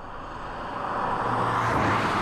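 A car driving, its road and engine noise growing steadily louder over the two seconds.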